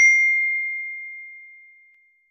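Notification-bell sound effect: a single high, clear ding that rings out and fades away over about two seconds.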